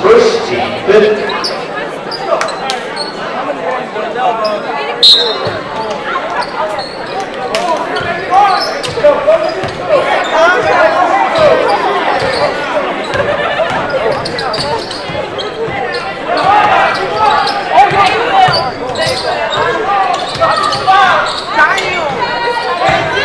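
Spectators talking and calling out throughout a basketball game in a gym, with the sharp knocks of the ball bouncing on the hardwood court now and then, all echoing in the hall.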